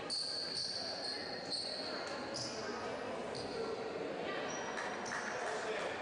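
Basketball game sounds on a hardwood court: high-pitched sneaker squeaks coming one after another, a basketball bouncing, and background voices in the gym.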